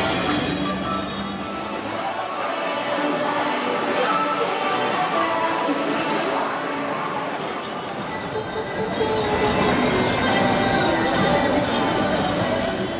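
Pop music played loudly through an advertising truck's loudspeakers.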